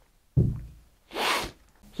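A bottle set down on a wooden workbench with a heavy thud, followed about a second in by a short breathy hiss.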